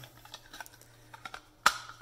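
Plastic case of an Atom WiZ LED downlight driver being handled, with faint small clicks and rattles and one sharp plastic click near the end.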